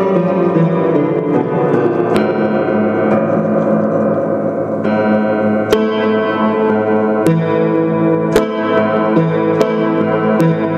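Russian upright piano played freely, notes held and ringing together in a dense wash, with a few hard-struck notes cutting through about every one to two seconds in the second half.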